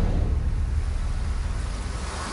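Low, steady rumble with a faint hiss above it, slowly fading: the sound-design bed under a title card.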